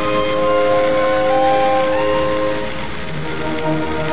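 Marx tinplate streamliner toy train running along its three-rail track with a steady rattle, under background music with long held notes.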